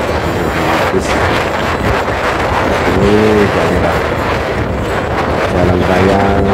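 Wind rushing over the phone's microphone on a moving motorcycle, with the engine running steadily underneath. A short pitched sound comes about halfway through.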